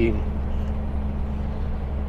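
Steady low drone of a heavy diesel truck's engine with road noise, heard through a microphone inside the cab.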